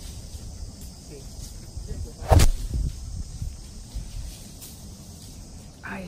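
A person drinking coconut water straight from a freshly opened green coconut, with a low rumble of wind on the microphone. A single sharp knock a little over two seconds in is the loudest sound.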